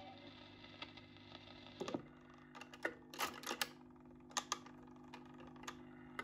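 Dansette Major record player's autochanger cycling at the end of a single. A clunk about two seconds in sets off a steady low hum, then a run of irregular sharp clicks and clacks as the tone arm lifts off and swings back to its rest.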